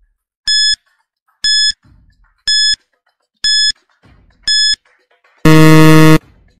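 Countdown timer sound effect: five short high beeps, one a second, then a longer, louder, lower buzzer as the time runs out.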